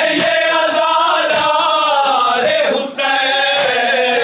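A group of men chanting a nauha (Shia mourning lament) in chorus, with drawn-out wavering notes. Sharp slaps of matam, open-handed chest-beating, land in time about once a second.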